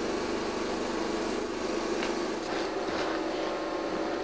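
A steady mechanical hum with one low held tone.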